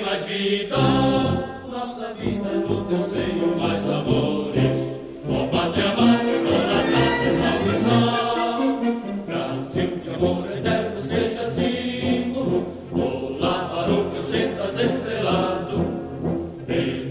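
Many voices singing an anthem together in unison, with instrumental accompaniment.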